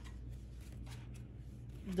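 Stiff paper, tarot cards or guidebook pages, handled on a table: a string of soft rustles and flicks.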